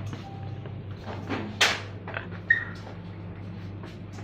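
Steady low hum of kitchen equipment, with a few sharp knocks and clatters of things being handled, the loudest about one and a half and two and a half seconds in, the second with a brief ring.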